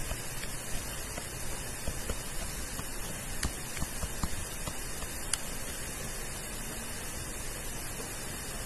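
Steady hiss of microphone and room noise, with faint, irregular ticks from a stylus writing on a tablet screen.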